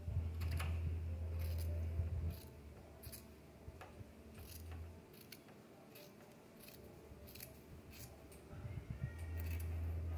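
Fabric scissors snipping through a baby onesie, a cut about every second, with a low steady hum that fades out midway and comes back near the end.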